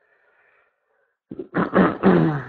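Near silence, then about one and a half seconds in a man makes a short wordless voiced sound right into a handheld microphone.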